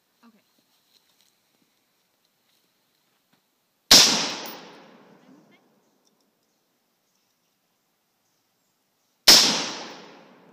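Two single shots from a Colt M4 carbine in 5.56mm, about five and a half seconds apart, each a sharp crack with a short fading echo.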